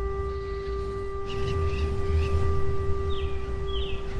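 A steady held drone tone with faint overtones over a low rumble. From about a second in, several short bird-like chirps come in at uneven intervals.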